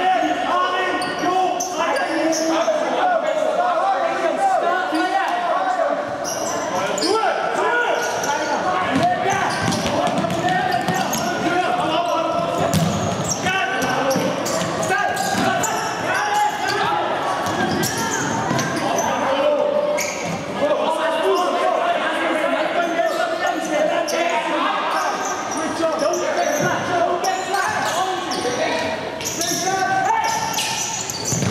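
Futsal match sounds echoing in a large sports hall: a ball being kicked and bouncing on the wooden court in short sharp strikes, over a steady mix of voices calling out.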